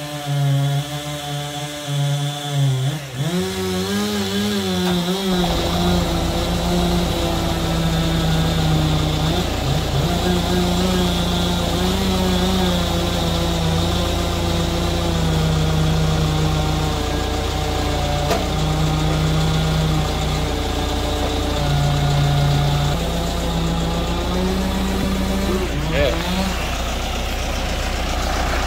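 Heavy equipment engine running at the work site: a steady low rumble that comes in about five seconds in, under a droning tone that shifts pitch up and down in steps.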